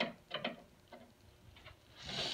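Screwdriver working a screw at the front corner of a photocopier's control panel: a few faint, scattered clicks of metal tip against screw and plastic.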